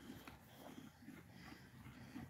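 Near silence: faint outdoor background with a few small, indistinct rustles.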